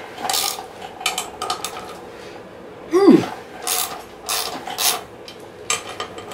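Socket ratchet clicking in short repeated strokes, about two a second, as it works the threadlocked brake-rotor bolts of a dirt bike's front wheel. A short sound falling in pitch comes about halfway through.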